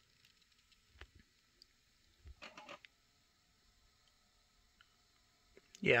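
Near-silent room with a few faint clicks: one about a second in and a short run of clicks about two and a half seconds in.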